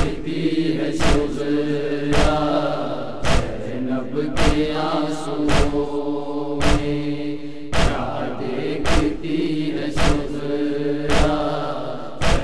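An Urdu noha, a Shia lament, chanted in long held vocal lines. A heavy thump keeps time about once a second.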